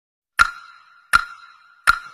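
Three identical short ringing pops on the same high note, evenly spaced about three-quarters of a second apart, each fading before the next: an added sound effect or intro beat over the vlog's title card.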